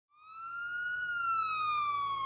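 A single sustained, whistle-like high tone that fades in, rises slightly during the first second, then slowly glides downward in pitch.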